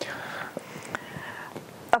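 A man's voice hesitating quietly mid-sentence: breathy, half-voiced sounds with no clear words, and a short click near the end.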